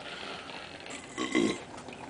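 A man's short burp about a second and a half in, right after chugging a bottle of wine.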